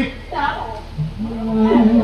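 A performer's voice in drawn-out, sing-song stage declamation: a short syllable, then a long held syllable that wavers in pitch.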